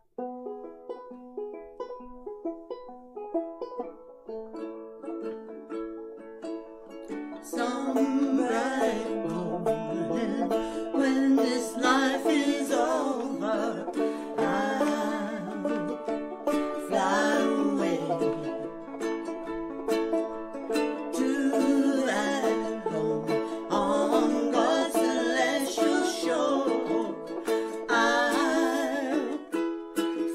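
Banjo and ukulele playing together in a plucked instrumental introduction; about seven seconds in, two women's voices come in singing over them and carry on to the end.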